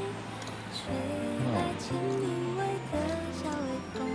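Soft background pop love song: a singer's melody over gentle accompaniment and a steady bass line.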